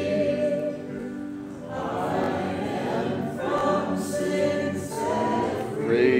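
Many voices singing a slow gospel song together, with long held notes.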